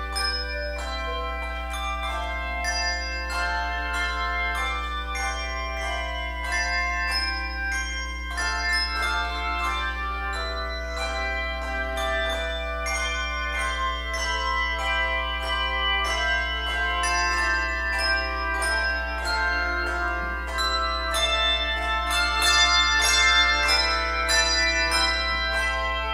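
Handbell choir playing a piece: many handbells struck in overlapping chords, each note ringing on, growing a little louder in the last few seconds.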